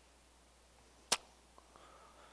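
Quiet room tone broken by a single sharp click about a second in.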